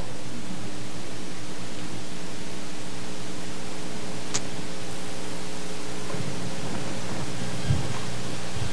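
Steady hiss with a low electrical hum: the background noise of the recording while nothing else sounds. A faint tick about four seconds in.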